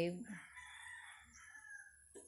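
A faint, drawn-out animal call in the background, lasting about a second and a half and sloping down in pitch as it tails off.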